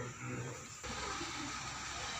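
Low murmur of voices in a room, then an abrupt cut about a second in to steady hissing room noise with faint, distant voices.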